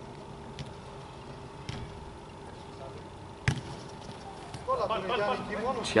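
A football struck once with a sharp kick about three and a half seconds in, the corner kick being taken, over a faint steady hum. Players' voices calling out near the end.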